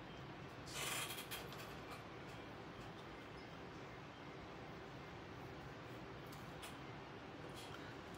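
Faint scratching of a paintbrush working white paint onto cotton fabric, with one brief louder rustle about a second in.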